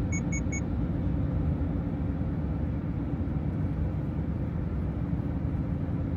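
Steady road and engine noise inside a moving car's cabin, with three quick high beeps right at the start.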